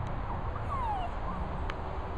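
A dog whining: a few thin, high whines, the clearest one sliding down in pitch just before the middle, over a steady low background noise. A short sharp click comes near the end.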